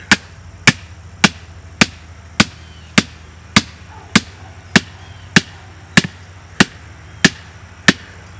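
A hammer pounding the top of a rigid PVC fence post to drive it into the ground, in a steady rhythm of about fourteen sharp blows, a little under two a second.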